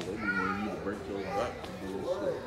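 Indistinct voices talking.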